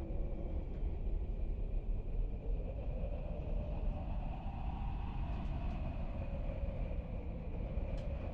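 Steady low rumbling background noise with a faint high hum, with no distinct events.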